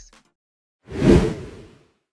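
A single whoosh transition sound effect: it swells in a little under a second in, peaks briefly and fades away within about a second.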